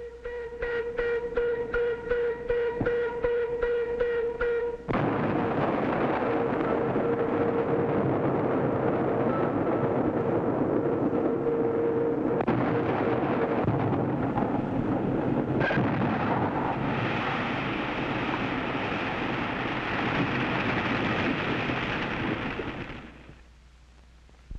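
Open-pit mine blasting. A steady warning tone with a fast flutter sounds for about five seconds. Then the dynamite blast sets in suddenly as a loud, sustained roar of explosion and falling rock that lasts some eighteen seconds and dies away near the end.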